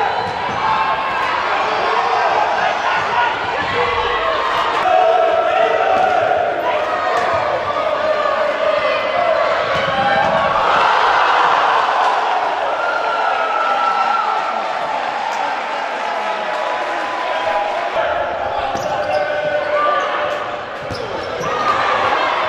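Futsal match play in a sports hall: the ball is struck and bounces on the court, with players shouting and spectators' voices echoing around the hall.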